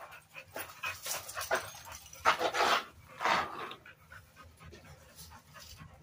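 Pit bull panting hard from flirt-pole exercise, a run of breaths that is loudest in the middle and fades toward the end.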